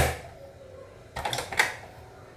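Plastic blender jug and lid being handled: a sharp click at the start, then a short run of clacks and knocks about a second and a half in.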